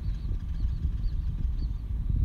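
Wind buffeting an outdoor microphone: an uneven low rumble that gusts up and down.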